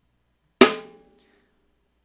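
A single accented snare drum hit, ringing out briefly.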